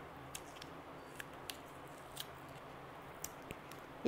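Faint handling sounds: a handful of short, scattered ticks and soft rustles as fingers work a small white pouch, over a low steady hum.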